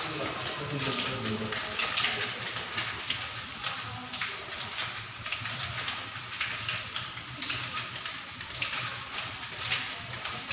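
Footsteps of several people walking along a hallway, a steady run of clicking steps, with faint talk in the first second or two.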